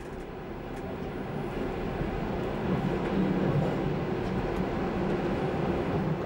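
A train running through the station on the rails, a steady rumble that grows louder over the first few seconds and then holds.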